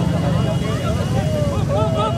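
Motorcycle engines running among a crowd, with many overlapping voices calling out over them, the voices growing busier near the end.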